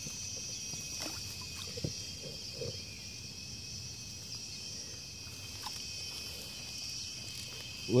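Insects chirring steadily in an even, high-pitched chorus, with a few faint knocks and rustles near the middle.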